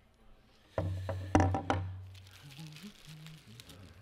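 Several quick knocks and thumps about a second in, over a low hum that starts with them and slowly fades.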